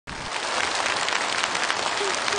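Large theatre audience applauding, a dense steady patter of many hands clapping.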